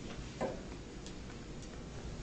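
Quiet room tone with one short click about half a second in, followed by two fainter ticks.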